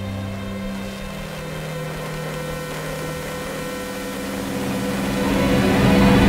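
A steady electronic drone of many held tones, with a hiss of static swelling louder over the last two seconds.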